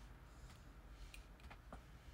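Near silence: room tone with a low hum and a few faint, short clicks.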